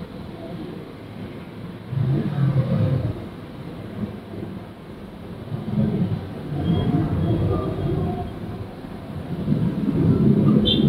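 Car's road and engine noise heard from inside the cabin in city traffic, a low rumble that swells louder about two seconds in and again around six to eight seconds.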